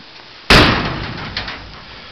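Steel door of a 1967 Ford Econoline van slammed shut about half a second in: one sharp bang that rings and dies away over about a second.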